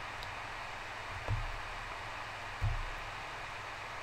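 Steady faint hiss of the recording's background noise, with two soft low thumps about a second and a half apart.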